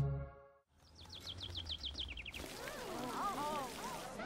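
Cartoon background ambience with birds chirping: a quick falling trill of about ten notes, then a steady noise bed with more scattered rising-and-falling chirps. It begins just as the theme music cuts off.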